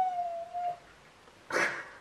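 Goldendoodle whining: one long, high, slightly wavering whine that stops under a second in. A short, sharp noise follows about a second and a half in.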